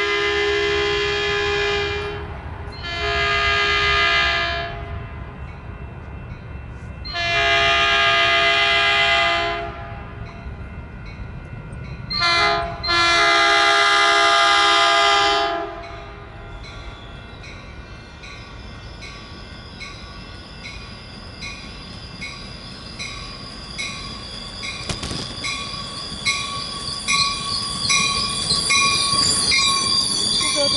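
Commuter train locomotive sounding its multi-note air horn in four blasts, long, long, very short, long, the standard warning pattern for a grade crossing, as it approaches the station. The train's approach follows as a rumble that grows louder toward the end, with a faint ringing repeating about once a second, until the bilevel cars pass close by.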